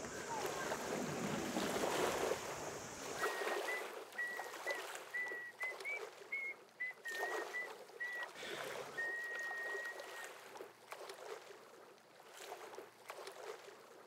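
Small waves lapping and washing against a concrete pier and the rocky shore, rising and falling unevenly. Through the middle comes a thin, high whistle made of short repeated notes.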